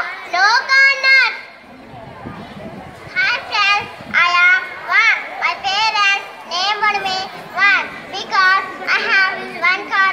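A child speaking into a microphone in short, quick phrases, with a brief pause about two seconds in.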